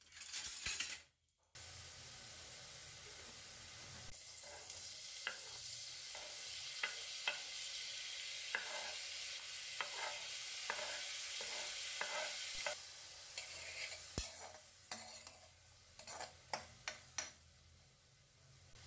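Whole spices (cumin seeds, black pepper, cloves) sizzling in hot oil in a kadai, with a steady hiss and sharp taps of a spatula on the pan as chopped vegetables are tipped in and stirred. The sizzle drops away about two-thirds of the way through, leaving scattered knocks of stirring.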